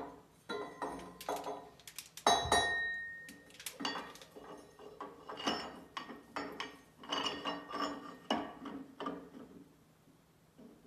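Steel milling-machine spindle being slid through its housing and the drive pulley: a string of metal clinks and knocks, the loudest a little over two seconds in with a brief ringing tone.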